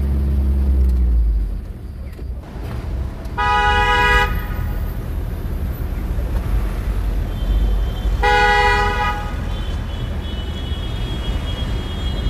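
A car horn sounds twice, two short blasts about five seconds apart, over the low rumble of a vehicle driving.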